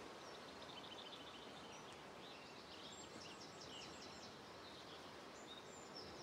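Near silence: faint outdoor background hiss with small birds chirping and trilling faintly, mostly in the first two thirds.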